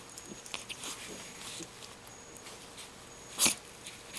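Two small dogs play-fighting on a bed: faint scuffling and small dog noises, with one short, loud dog sound about three and a half seconds in.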